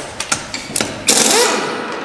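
Impact wrench loosening a car wheel's lug nuts: a few short clicks, then about a second in a loud, rapid hammering that keeps going.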